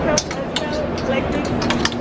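Plastic clothes hangers clicking against a metal clothing rail as shirts are slid along it, in a quick run of short clinks.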